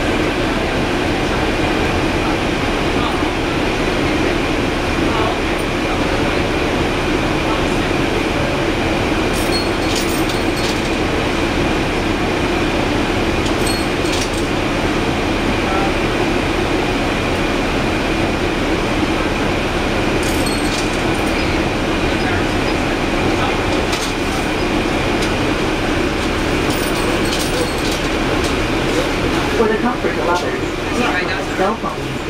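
Cummins ISL straight-six diesel engine and drivetrain of a 2011 NABI 416.15 transit bus, heard from the rear seats: a steady, loud drone, with a few brief rattles.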